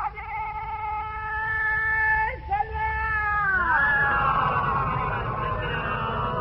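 A chanting voice holds a long, steady high note, jumps briefly, then glides down about three and a half seconds in into a busier chanted passage. A constant low hum from the old, narrow-band tape runs underneath.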